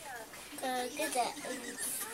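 A young child's voice making short wordless vocal sounds, babbling rather than words, through the second half.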